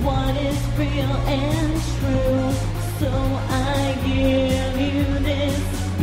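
A woman singing a slow, held melody into a microphone over a recorded electronic gothic-rock backing track with steady bass and a regular drum beat.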